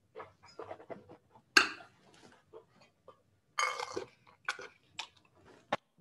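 A wine taster sipping Riesling from a glass and working it around the mouth: a sharp slurp about one and a half seconds in, a longer slurp a little after three and a half seconds, and small wet mouth clicks between. A short sharp tap near the end as the glass is set down on the table.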